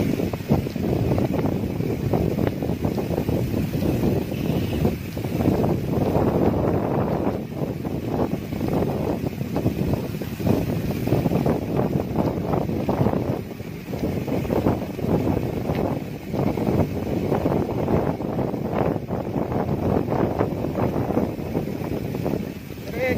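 Wind buffeting the microphone of a camera moving along with cyclists, a gusty rumble that rises and falls.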